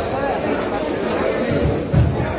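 Background chatter of many voices in a busy fish market hall, with a short low thump just before the end.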